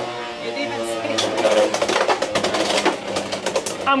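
Two Beyblade X spinning tops, one of them a Wizard Arrow 360 Low Flat, spinning and clashing in a plastic stadium. There is a whirring tone in the first second and a half, then a rapid run of sharp clicks and knocks as the tops collide and scrape along the toothed rail.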